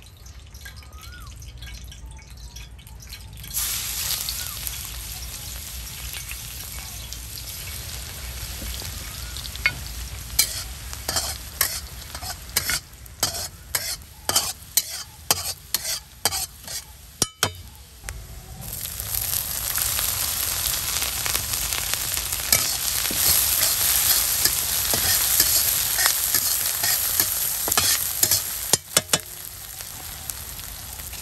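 Mustard oil frying in an iron kadai: a steady sizzle starts a few seconds in, and a spatula scrapes and clicks against the pan again and again in the middle. The sizzle grows louder past the middle as chopped onions, garlic and green chillies fry in the oil.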